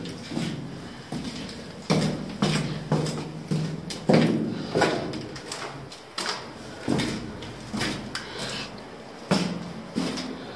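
Footsteps of wellington boots on a concrete floor, echoing in a small concrete room. About ten uneven steps, starting about two seconds in and coming closest together in the first half.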